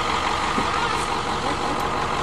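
School bus engine idling steadily.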